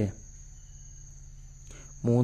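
A pause in a voice recording: a faint, steady high-pitched whine runs throughout over a low hum, after the tail of a spoken word at the very start.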